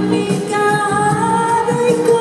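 A woman singing long held notes into a handheld microphone, backed by a full live pop band, recorded from the audience in an arena.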